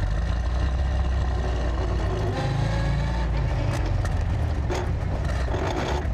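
The 1928 Isotta Fraschini Tipo 8A's straight-eight engine pulling the car along the road, heard from on board as a steady low rumble mixed with road noise.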